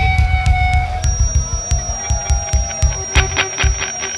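Live heavy rock band playing through a PA. The full band thins out about a second in, leaving sharp percussive hits at a steady quick beat, sustained guitar sound and a thin steady high whine.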